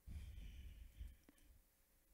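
Near silence, broken by a man's breath into a handheld microphone for about the first second, then a single faint click.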